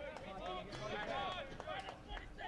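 Distant shouting and calling voices across an outdoor soccer field, with scattered short clicks among them.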